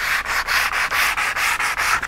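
120-grit sandpaper on a hand sanding pad rubbed along the edge of a wooden truck bed board, rounding over the edge. It rasps in quick, even back-and-forth strokes, several a second.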